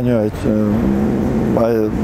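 Only speech: a man talking in an interview, holding one steady vowel for about a second in the middle before words resume near the end.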